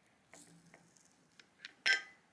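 A metal fork cutting down through soft sponge cake, with a few faint ticks, then one sharp clink against the plate near the end.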